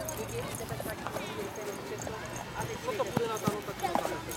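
Several voices calling and shouting over one another, with a few sharp knocks scattered through.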